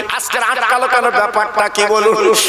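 A man's voice preaching in a sung, melodic chant, the pitch wavering and gliding as he draws out the words.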